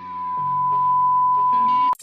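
A TV test-pattern beep: one loud, steady, high pure tone held for about two seconds and cut off suddenly just before the end, over a quieter low held music chord.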